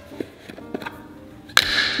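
Metal lid being twisted on a large glass pickle jar, a few light clicks over faint background music, then a sudden loud sound about one and a half seconds in as the lid comes free.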